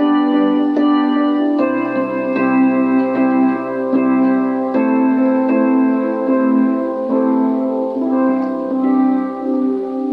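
Electronic keyboard played with both hands: slow, sustained chords, each held for a second or more before the next chord comes in.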